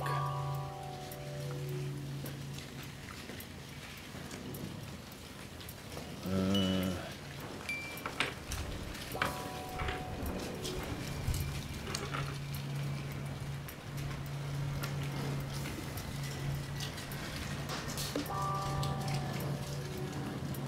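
Small wooden Soma cube puzzle pieces clicking and tapping against each other and the wooden table as they are fitted together. A steady low hum comes and goes underneath, with a few brief pitched tones and a wavering call about six seconds in.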